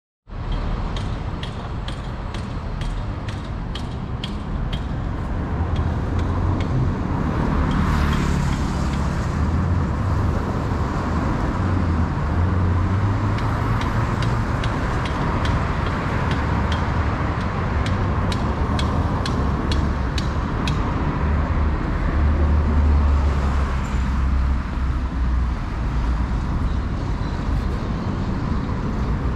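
Busy city street ambience: road traffic and a steady low rumble that swells now and then as vehicles pass. Runs of light, regular clicks, about three a second, come near the start and again midway.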